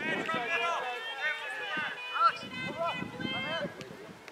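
Several voices shouting and calling out over one another during soccer play, loudest a little over two seconds in and dropping away near the end.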